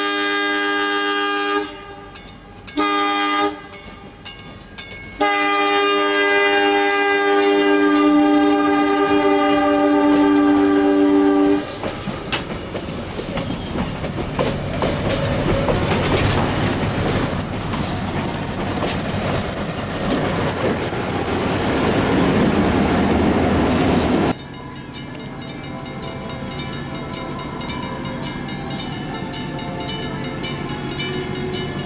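An EMD F7A diesel locomotive's air horn sounds for the grade crossing: long blasts broken by a few short toots in the first five seconds, then one long blast held for about six seconds. The locomotive and its bi-level coaches then roll past close by with steady clickety-clack, and a high metallic squeal sets in for several seconds midway. Near the end the sound drops abruptly to a quieter, steady rumble.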